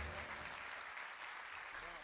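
Faint audience applause fading away as a song ends.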